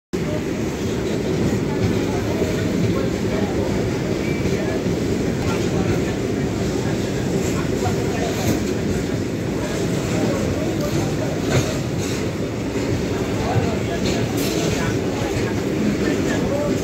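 Steady rumble of a train's wheels running on the rails, heard from the open doorway of a moving passenger coach. Scattered sharp clicks come every second or two, the wheels going over rail joints.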